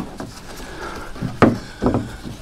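Handling noise as a nylon tie-down strap is pulled around a plastic kayak held in a steel hitch rack: rubbing and scraping, with a sharp knock about one and a half seconds in and a smaller one just after.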